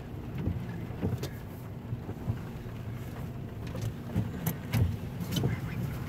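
Car cabin road noise while driving over a bumpy road: a steady low rumble with a scattered handful of short knocks and rattles from the bumps.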